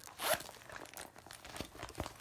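Metal zipper on a patent leather Coach handbag being pulled, with a short zip near the start, then faint clicks and rustling as the stiff leather bag is handled.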